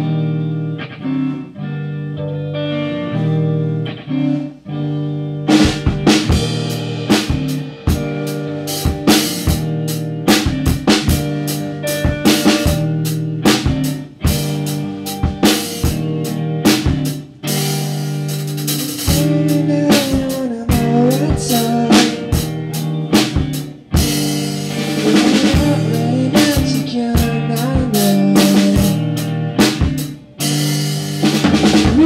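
Rock band playing: electric guitar alone at first, then the drum kit comes in about five seconds in with snare and bass drum hits under the guitar.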